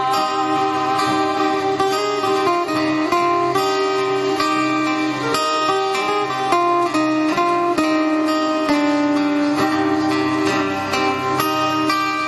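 Acoustic guitars playing an instrumental passage, a melody over strummed chords.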